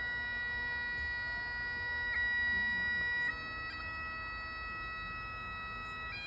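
Bagpipes played by a lone piper: a slow tune of long held notes over the steady drone, moving to a new note about three seconds in.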